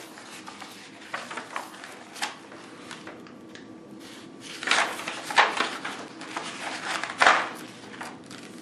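Paper pages of a ring binder being turned and handled: several soft rustles, with louder page flips around the middle and again near the end.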